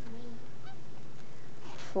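A steady low hum in a pause between two counted words, with the end of one spoken word at the start and the next word beginning at the very end. The crocheting itself is too quiet to stand out.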